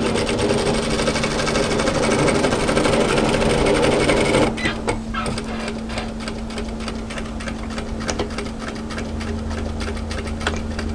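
Industrial sewing machine stitching a seam at a fast steady run, then slowing about four and a half seconds in to a slower, stitch-by-stitch pace. A steady motor hum runs underneath.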